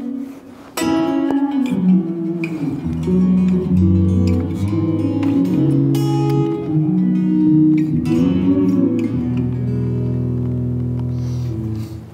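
Journey OE990 folding travel electric guitar being played: a strummed chord about a second in, then a slow run of notes and chords left to ring, with low notes sustaining near the end.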